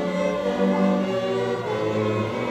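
School string orchestra of violins, cellos and bass playing held chords together, the full ensemble coming in strongly at the start.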